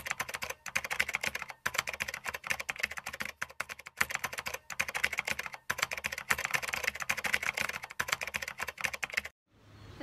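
Keyboard-typing sound effect: a fast, continuous run of key clicks with short breaks, stopping shortly before the end.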